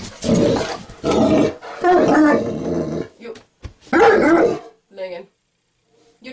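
Large mastiff-type dog growling and grumbling in a string of drawn-out vocal bursts, the loudest about four seconds in. It is resisting being told to get off the bed.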